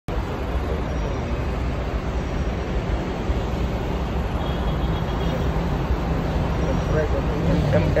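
Steady traffic-jam noise: the low, even drone of car and bus engines idling close by in stopped traffic.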